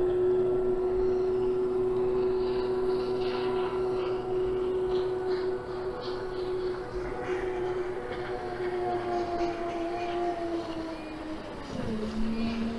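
A motor running with a steady, even hum that slides down in pitch near the end and settles at a lower note.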